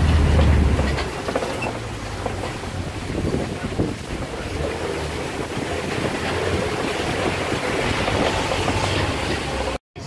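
Open-sided safari truck driving along a rough dirt track: engine running with a low rumble, plus road noise and small irregular knocks as it jostles over the ground. The sound cuts out for a moment just before the end.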